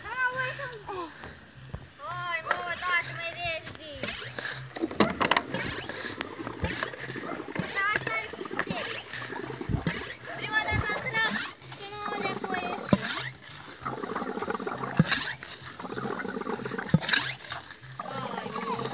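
Children talking while a water-filled plastic soda-bottle rocket on its launch pad is pressurized with air through a hose, with repeated short knocks and splashy noise from the pumping.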